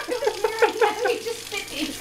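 A person laughing: a run of short, high-pitched giggles.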